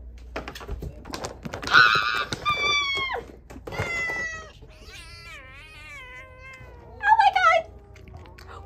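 Tabby house cat meowing: a few short calls falling in pitch, then one long wavering meow.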